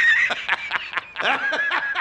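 High-pitched laughter sound effect: a wavering squeal that breaks into short, stuttering giggles about a third of a second in.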